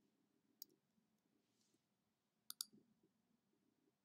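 Near silence: faint room tone with a few soft clicks, one about half a second in and a close pair of clicks near the middle.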